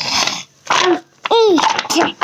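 A toddler's wordless fussing: a breathy, noisy cry at the start, then short whiny calls that rise and fall in pitch, the clearest about one and a half seconds in.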